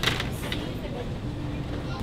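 Steady low hum of a store's background noise, with a short sharp rustle or knock at the start and a lighter one about half a second in as a plastic lotion bottle is handled on the shelf.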